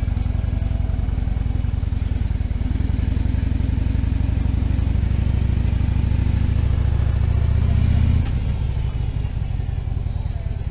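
Harley-Davidson V-twin motorcycle engine running as the bike rolls off at low speed. Its steady low pulse drops off about eight seconds in as the throttle eases.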